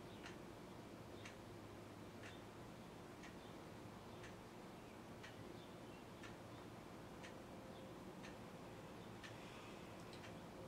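A clock ticking steadily, about once a second, in an otherwise near-silent room.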